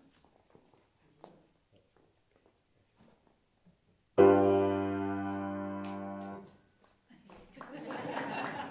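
A single chord struck on a grand piano about four seconds in, ringing and fading for about two seconds before it is cut off by the damper: the cue for the performers to bow.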